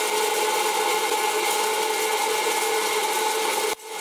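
Presto PopLite hot-air popcorn popper running: its fan blows a steady, noisy whir with a hum under it, heating the kernels before any start to pop. The sound drops out for a moment near the end.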